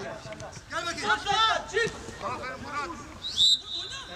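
Men's voices calling out on a football pitch, then near the end a short, high referee's whistle blast, the loudest sound here, as a player goes down.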